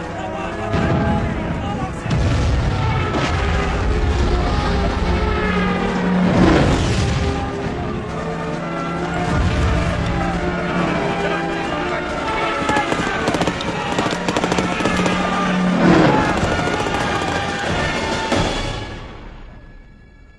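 A film battle soundtrack: a music score plays over rumbling gunfire and explosions, with two louder blasts about six and sixteen seconds in. It fades out near the end.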